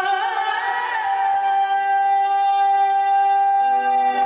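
A live singer holds one long high note after a short ornamented run, with almost no accompaniment beneath it; near the end, low instrumental tones come back in underneath.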